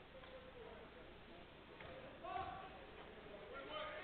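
Quiet gym ambience with faint, distant voices, once a little over two seconds in and again near the end.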